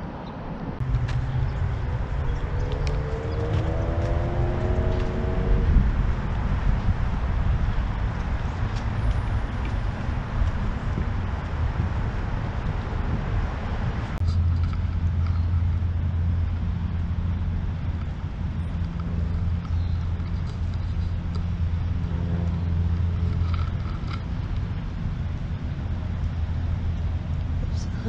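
Steady low rumble of road traffic, with an engine tone rising slowly a few seconds in. About halfway through the sound changes abruptly and a steady low hum takes over.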